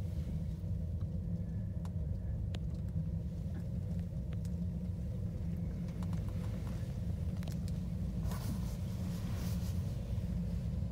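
Steady low rumble inside a descending gondola cabin, with a few light clicks. Near the end come two louder rushing clatters as the cabin passes a lift tower.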